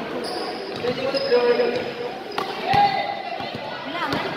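A basketball bouncing and hitting the hardwood during play in a large indoor hall, with a few sharp thuds, one a little over two seconds in, another just after and one at the very end. Players' voices run underneath.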